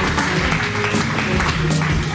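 Audience applauding, with a background music track playing a steady bass line underneath.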